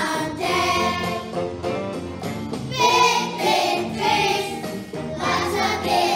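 A kindergarten class singing a song together as a group, with music playing behind the voices.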